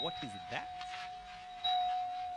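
A single steady electronic tone held evenly from a quiet stretch of the grime mix, with a fainter, higher ping at the start and again near the end.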